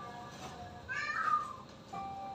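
A single short meow-like cry, rising then falling in pitch, about a second in, over background music with held notes.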